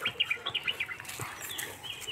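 Small birds chirping: a quick run of short high chirps through the first second, then a few scattered ones, with some sharp taps among them.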